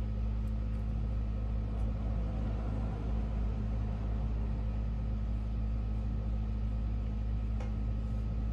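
A steady low mechanical hum with a faint constant higher tone above it, unchanging throughout.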